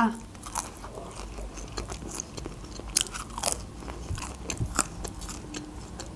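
Close-miked biting and chewing of homemade pizza, with crisp crunches of the crust coming at irregular moments; the sharpest crunches fall about three seconds in and near the five-second mark.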